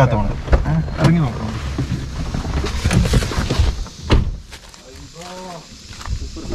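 Suzuki hatchback's door being unlatched and opened as a person climbs out, with handling noise and a single sharp knock about four seconds in.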